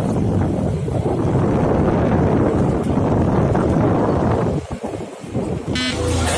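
Wind buffeting the microphone of a moving vehicle: a loud, steady rumble and rush, with engine and road noise mixed in, that dips briefly about five seconds in.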